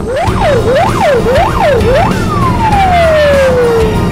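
Ural fire engine's siren: it sweeps quickly up and down about three times, then lets out one long falling tone in the second half, over the truck's engine running.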